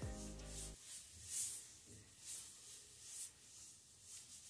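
Faint rubbing of a faux leather pencil skirt as the wearer turns and moves, a few soft rubs about a second apart. A held musical note sounds at the start and stops under a second in.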